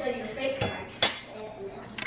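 Two sharp, ringing clinks of hard objects about half a second apart, over faint voices.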